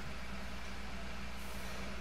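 Room tone: a steady hiss with a low electrical hum, and no distinct sound.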